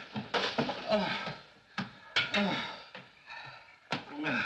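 A man's voice making indistinct sounds without clear words, over the steady hiss of an early sound-film soundtrack. A sharp click comes about two seconds in and another near the end.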